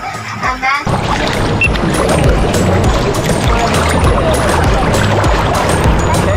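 A short laugh, then from about a second in a loud, steady wash of sea water churning and splashing close to the microphone at the surface, with background music.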